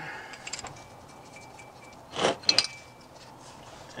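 Light metallic clicks and clinks as the rear differential's steel fill plug is unscrewed by hand and pulled from its threads, with a faint thin ring between them. A short hiss comes about two seconds in.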